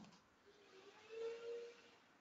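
Near silence on an open webinar audio line, with a faint short tone about halfway through.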